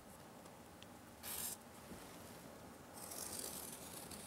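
Felt-tip marker drawing along the edge of cork roadbed on foam board. There is a short faint scratch about a second in, then a longer faint stroke near the end.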